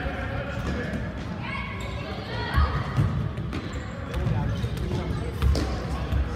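Futsal ball being kicked and thudding on a hard gym floor, a series of thumps with the sharpest a little before halfway and near the end, under the voices of players and spectators echoing in the gym.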